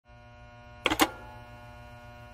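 Steady electrical buzz and hum from a glitch-style intro sound effect, broken by two short sharp crackles about a second in.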